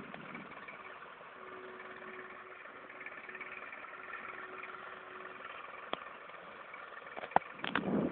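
Farm tractor engine running steadily, with a few sharp clicks and a louder knock near the end.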